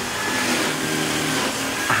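A motor running steadily, with a low hum and a faint high whine.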